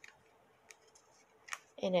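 A few faint sharp ticks and crinkles of cardstock being handled as the glued side tabs of a paper box lid are pressed into place, over a faint steady hum. A woman's voice starts near the end.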